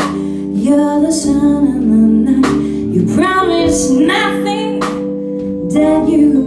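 A female lead vocalist singing, backed by a live band on electric bass, keyboards and drums, with drum and cymbal hits punctuating the groove.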